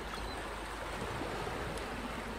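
Steady, even rushing noise of outdoor ambience.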